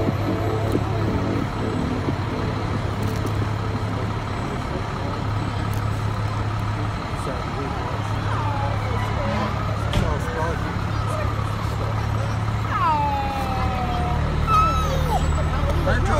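Steady low rumble of a fire truck's engine idling and moving in the parade, with indistinct voices around it. About thirteen seconds in, a brief falling wail.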